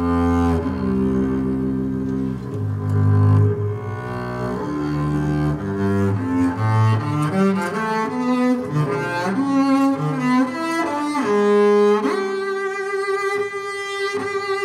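Double bass playing a melodic solo line of changing notes that climbs in pitch, then settles on a long held note with vibrato about twelve seconds in.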